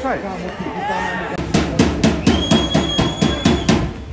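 A drum beaten rapidly and evenly, about five strokes a second for a little over two seconds, over shouting voices at a football ground. Partway through the drumming a single long, high whistle tone is held.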